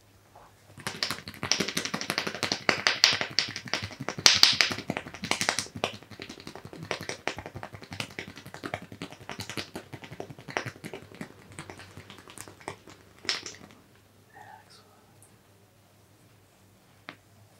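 Rapid hand patting and tapping on a man's ear and cheek during an ASMR ear massage: a dense run of skin-on-skin slaps and taps, busiest over the first few seconds, then thinning out and stopping about thirteen seconds in.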